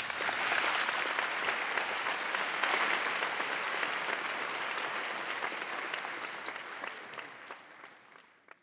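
Audience applauding, a steady clapping that dies away near the end.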